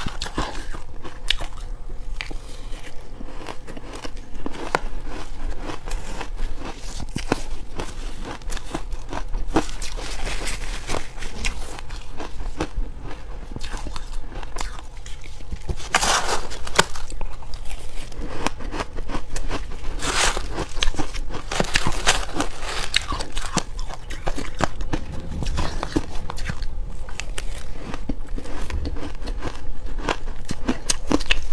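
Close-up crunching and chewing of crumbly frozen ice, a steady crackle of bites, with a metal spoon scraping through the ice in a plastic tub. The loudest crunches come about halfway through.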